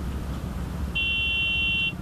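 A single high-pitched buzzing tone sounds for just under a second, starting about a second in, over a steady low vehicle engine rumble.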